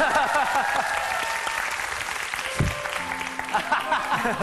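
Studio audience laughing and applauding, with a few steady music notes coming in about three seconds in.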